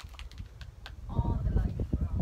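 Wind gusting on the microphone: an irregular low rumble that swells about a second in and becomes loud, after a few light clicks.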